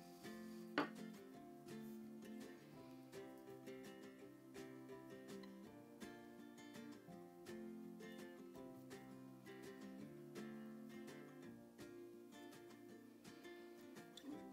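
Quiet background music of plucked strings, steady chord notes changing every second or so, with one brief click about a second in.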